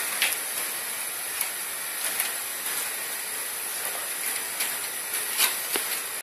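Steady sizzling hiss of a thin pancake frying in a hot buttered pan. A few light clicks and rustles come from a foil-wrapped stick of butter being rubbed over the stacked pancakes.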